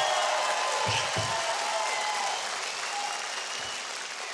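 Studio audience applauding, the applause slowly dying down.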